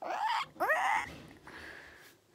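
A pet animal giving high whining calls that rise sharply in pitch, twice within the first second.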